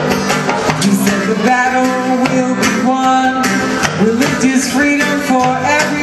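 Live band music through PA speakers: a steady beat with guitar and singing.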